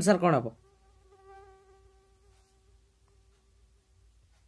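A faint, steady buzzing tone that starts just after a brief spoken phrase, holds one pitch for about three seconds, then fades out.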